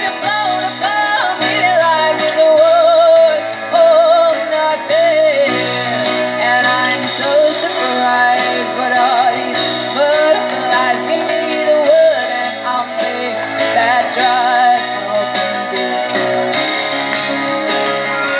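A live band playing a song: a woman's voice singing with a wavering vibrato, backed by electric and acoustic guitar.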